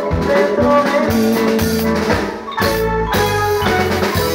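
Marimba orchestra playing live: wooden marimbas struck with mallets over a drum kit beat, with a short dip just past halfway before the drums come back in.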